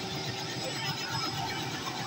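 Robinson R66 turbine helicopter running on the ground with its rotor turning: a steady, even noise with a faint high whine.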